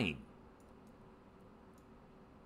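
A few faint computer mouse clicks over a low, steady room hum, as the map view is moved. A man's voice trails off at the very start.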